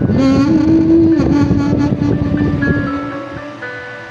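A karaoke backing track at the close of the song, with a woman's long held sung note through a handheld microphone. Both fade away over the last second or so, leaving soft sustained chords.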